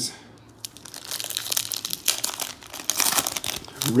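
Foil wrapper of a Panini Contenders football card pack crinkling and tearing as it is ripped open by hand, starting under a second in and going on in a rapid crackle.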